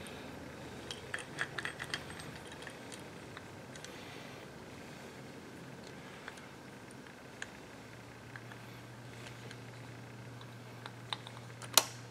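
Small metal clicks and taps as a Kwikset lock cylinder housing is handled and fitted back into a brass doorknob, ending with a sharper click just before the end.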